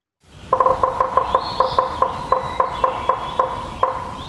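Woodpecker pecking on a tree: a regular run of sharp taps about four a second, starting a moment in. The clip has been normalized and run through a compressor to make it louder.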